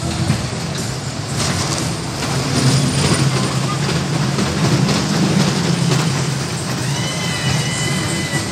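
Kiddie caterpillar roller coaster train running along its steel track, heard from on board as a steady low rumble, with a brief high squeal near the end.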